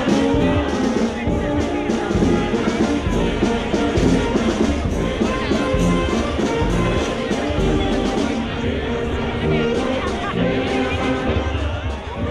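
Brass band playing a lively tune, with tuba and saxophones, to a steady beat.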